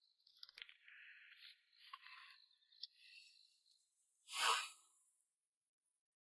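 Paper and a card folder handled and slid by hand: faint rustling with a few small ticks over the first three seconds, then a single short, louder rush of noise about four and a half seconds in.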